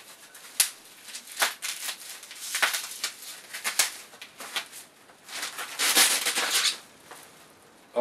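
Plastic bubble wrap crinkling and crackling as a beer bottle is unwrapped by hand, with scattered sharp crackles and a longer, louder rustle from about five to seven seconds in.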